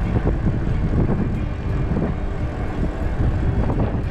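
Steady wind rush and road rumble from a bicycle rolling along an asphalt road, heavy in the low end.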